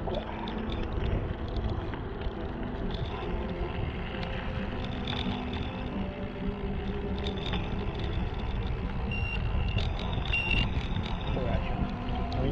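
Wind rumbling steadily on the microphone of a moving action camera, with tyres rolling on wet tarmac at riding pace.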